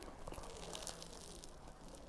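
A person chewing a mouthful of chicken sandwich, heard as faint, irregular soft clicks and squishes.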